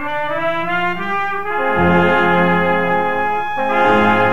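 Brass ensemble playing a slow processional march composed for the Good Friday Santo Entierro procession: long held chords, with deeper brass notes joining about a second and a half in and a change of chord near the end.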